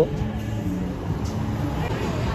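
A car's engine running at low speed close by on the street, a low steady hum under general traffic noise.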